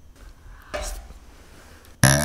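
A plastic spoon scraping briefly against a paper cup of soft-serve ice cream, once, about a second in, over faint room noise.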